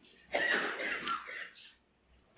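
A person coughing, a short run of coughs lasting about a second.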